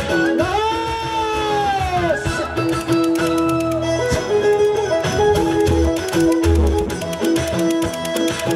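Instrumental break of a live song: a plucked string riff pulsing on one note, a fiddle-like melody that swoops up and slides down near the start, and a few low drum beats near the end.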